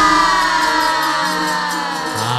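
Gamelan accompaniment of a wayang kulit performance: after a run of loud strikes, the held tones ring on and slowly fade.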